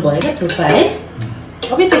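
Metal cutlery clinking and scraping against glass bowls and plates as food is eaten and served, in short irregular clicks.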